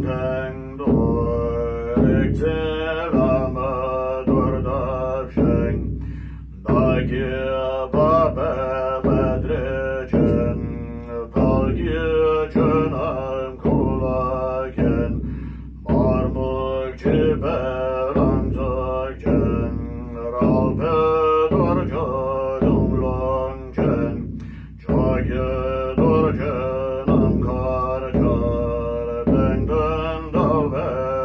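A man chanting Tibetan Buddhist liturgy while beating a large Tibetan nga drum on a stand with a curved beater. The drum keeps a steady beat under the chant, with brief breaks about six, fifteen and twenty-five seconds in.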